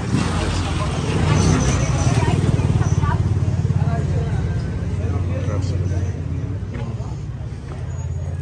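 Small single-cylinder engine of a motorcycle cargo tricycle running as it passes close by. It is loudest in the first few seconds and fades away after about six seconds, with voices of passers-by around it.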